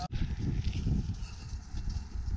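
A runner's footsteps on a shingle beach path, heard as irregular low thumps, with wind rumbling on the camera's microphone.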